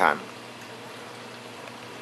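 Reef aquarium sump and newly added protein skimmer running: steady bubbling, trickling water noise with a low, steady hum underneath.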